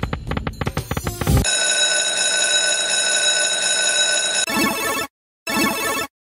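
Electronic slot-game sounds from the Book of Ra Deluxe 10 video slot. A drum-beat music loop runs for about the first second and a half, then gives way to a steady, bright, bell-like ringing tone for about three seconds. Near the end come two short chiming bursts with a brief silence between them.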